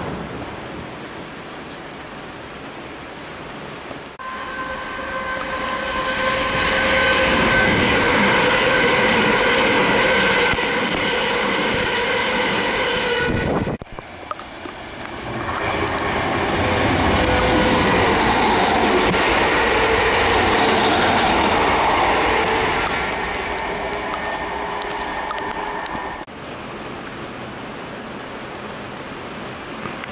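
Heavy rain falling, then an electric multiple-unit train running through the station with steady tones over the wheel and rail noise. It is cut off suddenly about 14 s in and followed by a second loud train passage. Rain alone is left again for the last few seconds.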